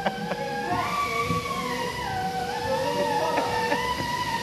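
A workshop machine running with a steady whine at several pitches at once, its pitch stepping up and down as it goes, loud enough to talk over.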